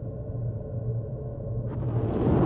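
Muffled battle soundtrack: a low, dull rumble under a steady low drone, with all the higher sounds of the fighting cut away, as if heard through stunned, deafened ears. Near the end the fuller, brighter sound of the battle suddenly breaks back in.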